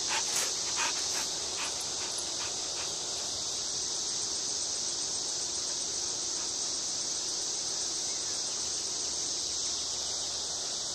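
A dog giving a run of short barks, about two or three a second, over the first three seconds, growing fainter. Behind it a steady high chorus of insects.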